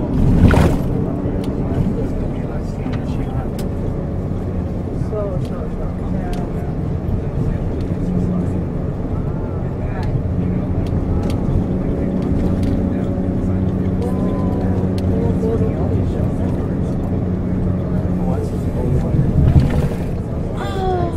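Steady engine and road noise of a tour bus heard from inside the cabin, with a low even hum throughout. A sharp knock comes just after the start.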